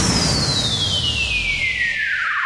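Hardcore electronic music in a breakdown with no beat: a synthesizer sweep glides steadily downward in pitch over a wash of filtered noise.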